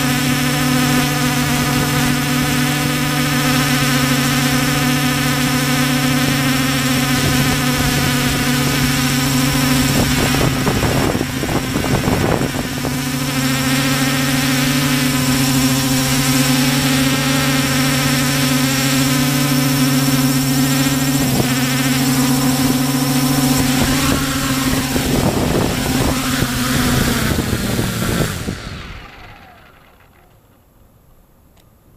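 Hubsan H501S quadcopter's brushless motors and propellers giving a loud, steady droning hum, heard close up from the camera carried on the drone. The hum sags briefly a third of the way in. Near the end the pitch falls and the sound dies away as the motors spool down on landing.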